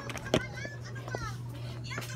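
Children's voices and chatter in the background, not close to the microphone, with one sharp knock about a third of a second in, over a steady low hum.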